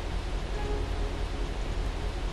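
Steady rushing of river water pouring over a weir.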